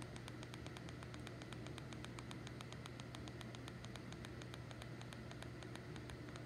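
Faint steady low hum with a rapid, irregular crackle of small clicks, like static.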